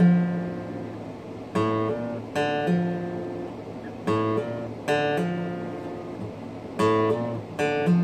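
Steel-string acoustic guitar in drop-D tuning playing a slow repeated riff: a chord strummed twice, then a hammered-on low note left to ring. The cycle comes round about three times.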